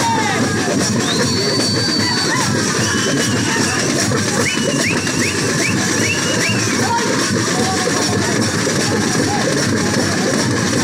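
Fast, dense folk drumming by a dancing troupe with drums slung at the body, keeping up a steady loud rhythm, with high gliding calls or whistle-like notes sounding over it, a run of short repeated ones around the middle.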